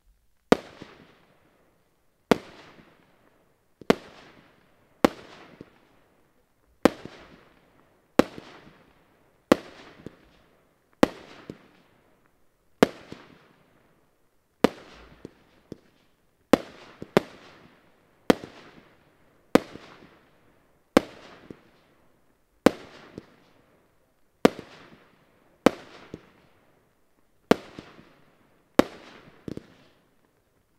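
Firework cake firing one shot at a time, about every second and a half, each a sharp bang followed by a fading crackling tail.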